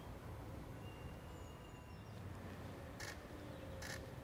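Outdoor ambience: a steady low rumble with faint, thin bird calls. Two brief sharp noises come near the end, about a second apart.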